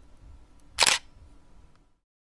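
A single camera shutter sound effect: one short, sharp snap about a second in.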